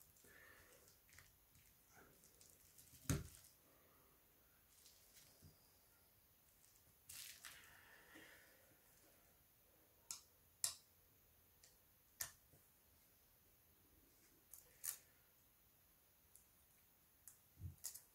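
Near silence broken by scattered small clicks and taps of a plastic pry tool working a smartphone's lower board loose and small parts being handled, with one sharper knock about three seconds in and a soft rustle a few seconds later.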